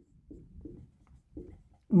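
Marker writing on a whiteboard: a few short, faint strokes. A man's voice starts right at the end.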